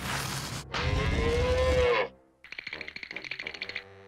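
Cartoon sound effect of a cow mooing, loud, ending about two seconds in. It is followed by a quieter run of rapid, even clicks with a high ringing tone.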